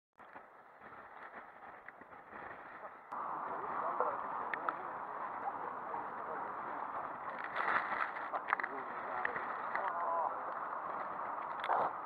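Rough sea and wind along a sea wall: a steady, muffled rush of surf and wind on the microphone that gets louder about three seconds in, with a few sharp knocks of spray or buffeting.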